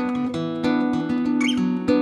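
Background music: acoustic guitar, notes plucked about two or three a second over ringing chords.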